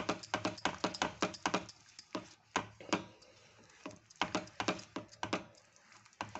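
Thick tomato-and-red-chilli chutney cooking down on high heat in a non-stick pan, sputtering in a rapid, irregular run of sharp pops as it is stirred. The pops thin out in the middle and pick up again about four seconds in.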